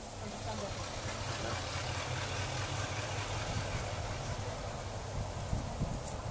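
Distant diesel train engine running with a steady low hum, under an even hiss of outdoor air.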